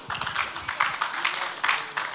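Congregation responding with scattered clapping and voices calling out, a loose, irregular patter of claps.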